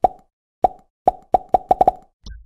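Editing sound effects from an animated outro graphic: about eight short, pitched clicks, spaced out at first and coming quicker and quicker toward the end.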